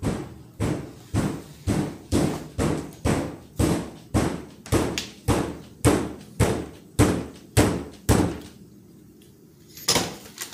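Heavy, regular thumps, about two a second, that stop about eight seconds in, followed by a single hard bang at the very end.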